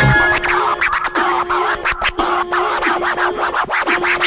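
Hip-hop track breakdown: turntable scratching in quick, short strokes over a held note, with the bass and kick drum dropped out.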